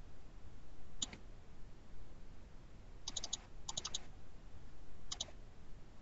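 Computer mouse clicking. There is a single click about a second in, two quick runs of about three clicks around the middle, and a double click about five seconds in.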